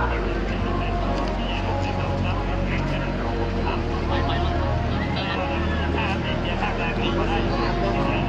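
Drag-racing motorcycle engine running at a steady fast idle, its pitch shifting slightly a few times.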